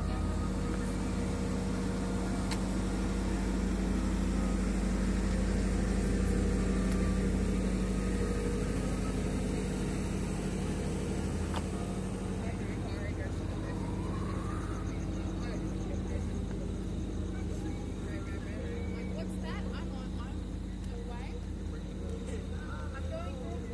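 Steady low rumble of motor-vehicle traffic with a constant hum, and faint voices now and then.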